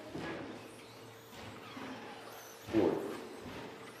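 1/10-scale 2WD short course RC trucks with 13.5-turn brushless motors running around an indoor track, with faint motor whine and tyre noise in a large echoing hall. A sudden thud, the loudest sound, comes near three seconds in, like a truck landing or hitting the track border.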